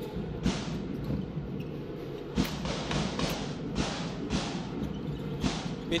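Basketball arena during live play: steady crowd din with music in the hall, and a series of sharp thuds from the ball being dribbled on the hardwood court, irregularly spaced about half a second to a second apart.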